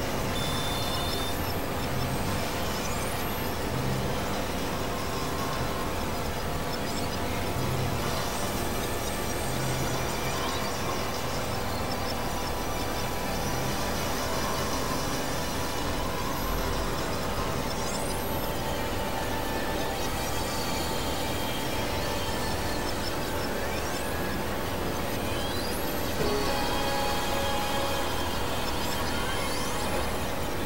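Experimental electronic drone and noise music: many held synthesizer tones layered over a dense, steady wash of noise. A few brief rising glides sound in the high range, and the whole gets slightly louder near the end.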